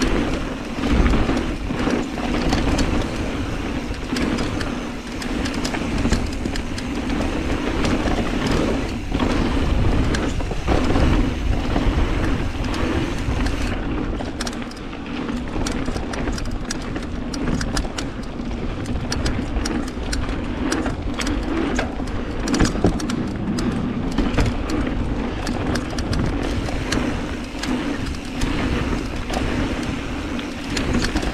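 Mountain bike riding down a dirt and gravel trail: continuous tyre rumble over the ground, with frequent small knocks and rattles from the bike as it rides over rough ground.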